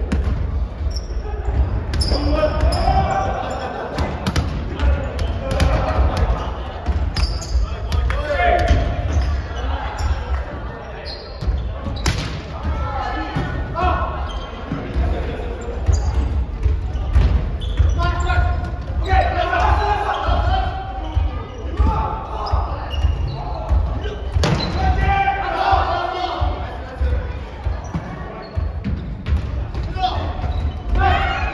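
Volleyball being hit and bouncing in a gymnasium: several sharp slaps of hands on the ball and the ball on the wooden floor, a few seconds apart, echoing in the large hall, with players calling out between hits.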